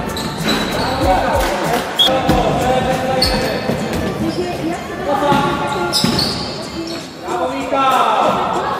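A basketball bouncing on a sports hall's wooden floor during play, with players' voices and the occasional shoe squeak echoing in the large hall.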